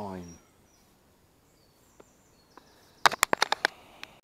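A man's voice with a drawn-out wordless sound falling in pitch at the start. About three seconds in comes a quick run of about eight sharp clicks lasting under a second.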